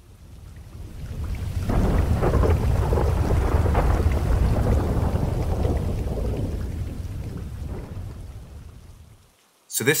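Thunderstorm sound effect: a long roll of thunder with rain that swells up over the first two seconds, rumbles on, and fades away shortly before the end.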